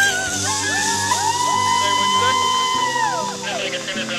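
Background music with held chords, over which a woman gives one long, high, held scream as she launches down a zipline, rising at the start and falling away near the end.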